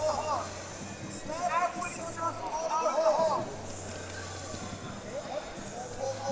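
Voices calling out in a large arena, in a few short stretches, over a steady low hum.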